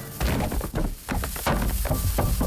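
A quick run of thuds and knocks as bodies tumble onto a wooden floor and a heavy round bomb, shaken out of its cake box, drops onto the floorboards.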